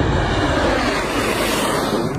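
An F-117 Nighthawk's twin non-afterburning General Electric F404 turbofans as the jet passes low overhead: a loud, steady rushing roar with no clear pitch.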